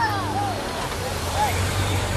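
Several Honda Gold Wing touring motorcycles riding past close by at low speed. Their engines make a low steady hum that drops slightly in pitch as they go by.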